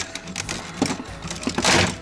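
Plastic parts of a Nerf Sledgefire blaster clicking and rattling as they are worked apart by hand, with a louder scrape near the end as the piece comes free.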